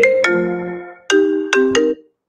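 A mobile phone ringtone playing a marimba-like melody of struck notes. It fades briefly about a second in, starts again, then cuts off suddenly near the end.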